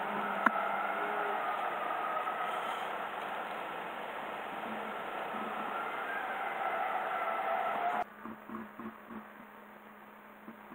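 Cabin noise of a Lexus saloon rolling slowly: the engine running with a steady hum and faint whine. It cuts off abruptly about eight seconds in, leaving a much quieter stretch with faint soft pulses.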